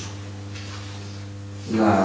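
Steady electrical mains hum, a low buzz made of several evenly spaced steady tones, carried on the room's microphone system during a pause in speech. A man's voice starts again near the end.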